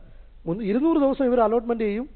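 Speech only: a man talking into a handheld microphone, starting about half a second in.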